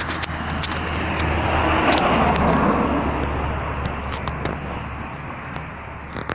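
A car driving past on the street, its sound swelling to a peak about two seconds in and then fading away, with scattered light clicks throughout.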